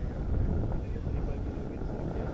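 Motor of a radio-control Extra 300 aerobatic plane, heard faintly from the ground as it flies high overhead, as a steady drone under a low rumble.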